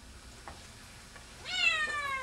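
A domestic cat meowing once near the end: a single drawn-out meow that rises quickly in pitch and then falls slowly.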